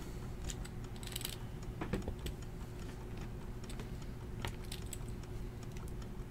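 Faint, scattered light clicks and taps, a handful over a few seconds, over a low steady hum.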